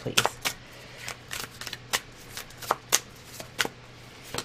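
A deck of oracle cards being shuffled by hand: a string of irregularly spaced crisp snaps and clicks of card against card.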